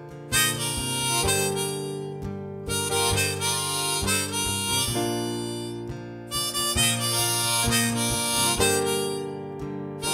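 Folk-Americana song intro: harmonica played from a neck rack carries the melody in phrases with short breaks, over strummed acoustic guitar and keyboard.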